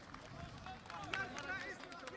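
Faint, scattered applause from an outdoor audience, heard as irregular hand claps, with voices in the crowd near the middle.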